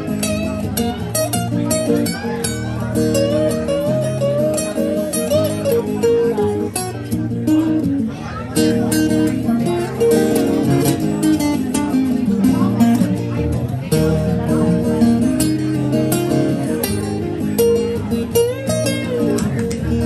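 Steel-string acoustic guitar played live, picked notes ringing over held chords, heard through a PA speaker.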